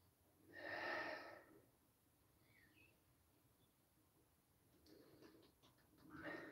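A man tasting beer from a glass: one short breathy sound about a second in, then a few faint mouth clicks near the end as he savours the sip.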